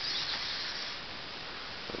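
Steady, even whirring noise of a hexapod walking robot's 18 hobby servos as it steps slowly forward.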